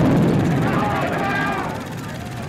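Low rumble of a boom that hits just before and slowly fades away, with a few faint voice-like sounds over it.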